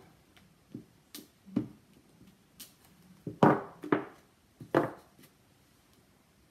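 Clear acrylic stamp block tapped onto an ink pad and pressed onto cardstock: a handful of light separate knocks and taps, the loudest about three and a half seconds in.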